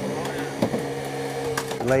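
Steady, even hum of a motor-driven hydraulic power unit running the jaws of life rescue tools, holding one pitch before it fades near the end.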